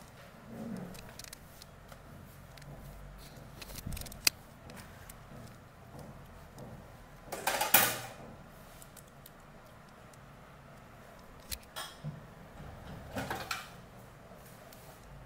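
Haircutting scissors snipping through sections of wet hair: a few short cuts, the loudest about halfway through and more near the end.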